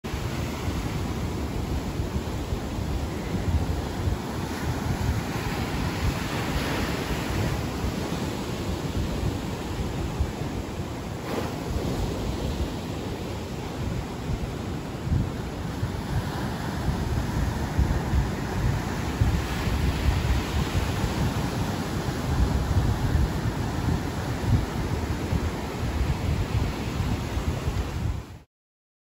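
A steady rushing noise with a heavy, uneven rumble at the low end.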